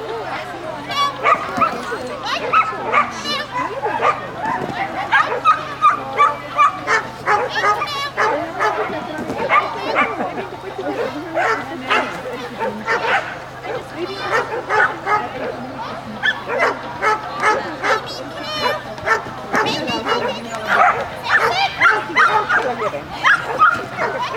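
Parson Russell terrier barking and yapping over and over, in quick short barks, excited while running an agility course, with a person's voice calling along with it.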